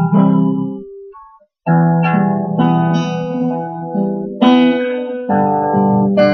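Guitar playing slow chords in an instrumental passage of a folk song. A chord rings out and fades to silence about a second in, then after a brief pause new chords are struck and left to ring, one every second or so.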